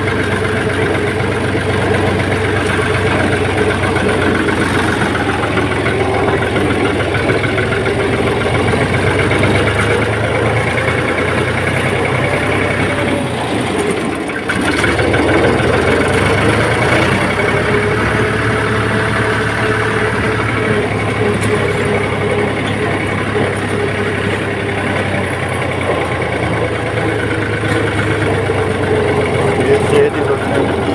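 Fiat 480 tractor's three-cylinder diesel engine running steadily as the tractor is driven, heard from the driver's seat. About 14 seconds in the engine sound briefly dips, then picks up again slightly louder.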